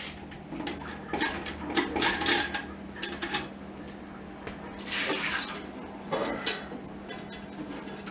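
Scattered clinks and knocks of metal parts and dishware at a kitchen sink as the still's worm and hoses are handled and drained, with a short splash of water about five seconds in.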